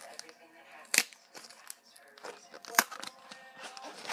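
Pokémon trading cards and their foil booster wrapper being handled, with light crinkling and a few sharp clicks, the loudest about one second in and another near three seconds in.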